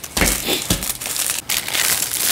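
Foil Pop-Tarts pouch being torn open and crinkled by hand, a continuous crinkling with a couple of light knocks of handling in the first second.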